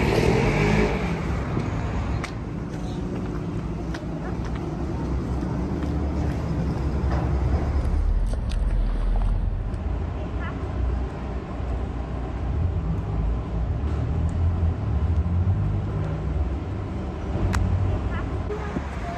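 Outdoor street ambience: a steady low rumble of traffic with people's voices in the background and a few faint clicks.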